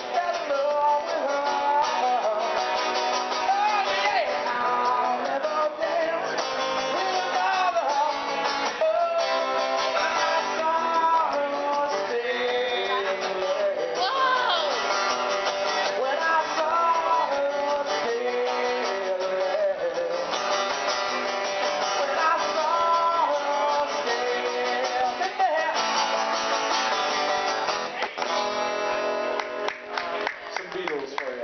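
Live acoustic guitar strummed steadily while a man sings a song along with it. The music drops off near the end.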